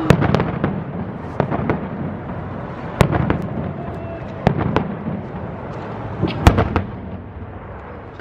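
Fireworks going off overhead: a string of sharp bangs and cracks at irregular intervals, some in quick pairs, the loudest at the very start and about six and a half seconds in.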